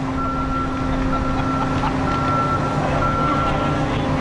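Heavy machinery running with a steady low drone while a high warning beeper sounds in long beeps with short gaps, about four of them, as the load is moved.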